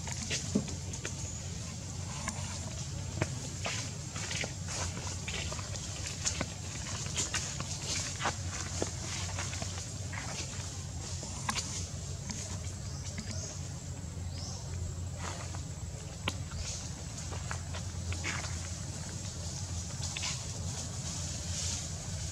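Outdoor ambience: a steady low rumble with scattered light crackles and snaps, like dry leaves and twigs being stepped on or brushed through.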